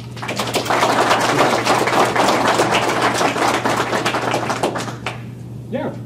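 Audience applauding: a dense patter of hand claps that builds quickly and dies away about five seconds in.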